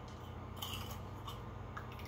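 A metal spoon and paintbrush scraping and clicking faintly against a small glass jar of runny homemade mud paint, made of dirt mixed with water.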